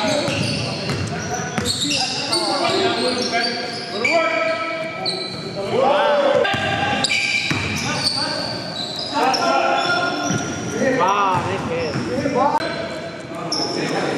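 Basketball game sounds in a large hall: a ball being dribbled on the hardwood floor, sneakers squeaking in short rising-and-falling chirps, and players' voices calling out. The squeaks come in clusters, most of all in the middle and later part.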